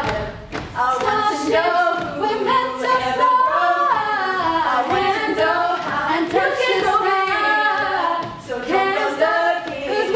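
A small group of teenage girls singing a cappella in several-part harmony, with no instruments; the singing goes on throughout, with a short dip about eight seconds in.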